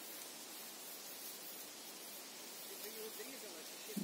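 Quiet outdoor ambience: a faint, steady hiss, with a faint voice murmuring about three seconds in.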